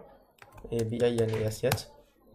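Typing on a computer keyboard: a short run of key clicks near the start, then more a little later. A man's voice speaks briefly over it in the middle.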